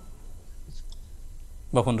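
A pause in a man's speech with a few faint clicks, then his voice starts again near the end.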